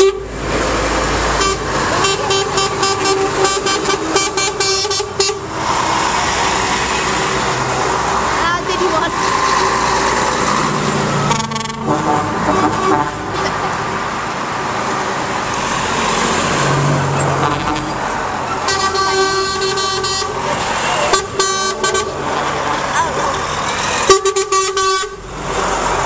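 Lorries in a passing convoy sounding their truck horns: a long blast from about a second and a half in, more blasts in the last third, with diesel engines and tyres going by between them.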